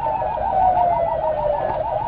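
Emergency-vehicle siren in a fast yelp, rising and falling about six times a second, with a second long tone sliding slowly down in pitch underneath it.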